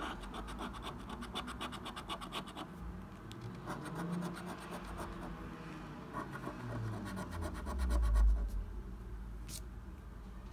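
A coin scratching the coating off a paper scratch card in quick, even strokes, in three spells with short pauses between. A low thump comes near the end of the last spell.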